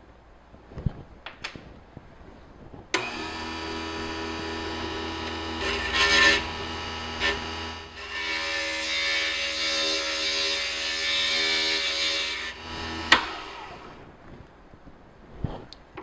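A glass grinder's motor starts about three seconds in and runs with a steady hum while a piece of glass is pressed against its wet diamond bit, giving a gritty grinding sound that grows louder in the middle as the edge is smoothed. The motor stops suddenly near the end, after a few quiet handling clicks at the start.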